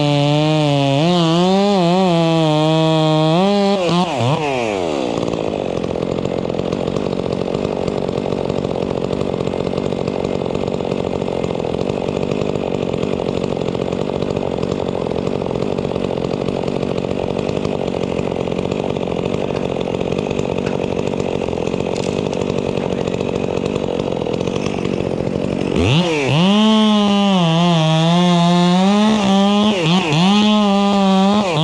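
Gas chainsaw cutting a tree trunk at full throttle, its pitch wavering under load. About four seconds in it drops off the throttle to a steady lower running sound for about twenty seconds, then revs back up and cuts again near the end.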